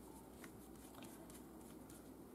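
Near silence, with a few faint clicks of small plastic refillable glue bottles and their caps being handled.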